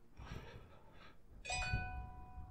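A single chime struck about a second and a half in, several clear tones ringing on and fading slowly.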